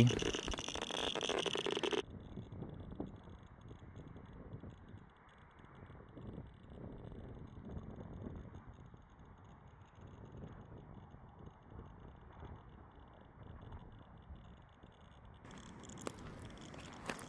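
Berthold LB 1210B radiation survey meter clicking rapidly in a dense crackle, held against radioactive copper shale reading about 200 counts per second. About two seconds in it cuts off abruptly to a faint, muffled noise.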